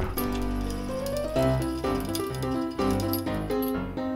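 Background music: a melody of short notes moving in steps, with a brief rising slide about a second in.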